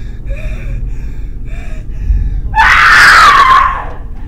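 A young woman's voice in distress: short gasping sobs about twice a second, then a loud scream lasting just over a second, starting about two and a half seconds in, its pitch sliding slightly down.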